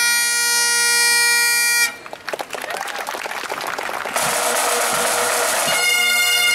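Highland bagpipes playing a held note over their drones, which stops about two seconds in. A few seconds of clapping and crowd noise follow, and near the end a pipe band's bagpipes start up.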